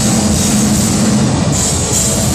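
Black metal band playing live: a dense, steady wall of distorted guitars and drums, loud and saturated, heard from the audience.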